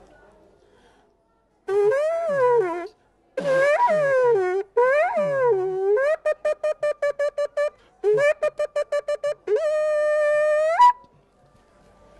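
Ram's horn shofar blown in a sequence of calls: three wavering blasts that rise and fall in pitch, then two runs of rapid short staccato notes, then a long steady blast that jumps up in pitch just before it stops. It is sounded as a cry of anguish and repentance.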